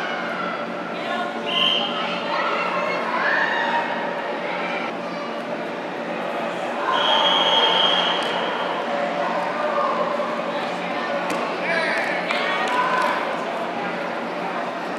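Voices calling out across a large indoor sports hall, with several high held shouts, the longest about seven seconds in, over a steady low hum.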